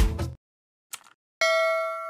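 Background music cuts off right at the start, then a faint mouse-click sound effect, then a bright bell ding about a second and a half in that rings on and fades: the notification-bell sound effect of a subscribe-button animation.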